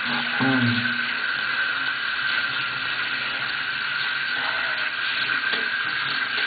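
Water running steadily from a tap during a dog's bath, with a short vocal sound about half a second in.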